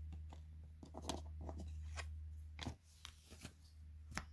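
Trading cards being handled, flipped over and laid down on a pile: a scatter of soft slaps and rustles of card stock. A low steady hum runs underneath and stops about two and a half seconds in.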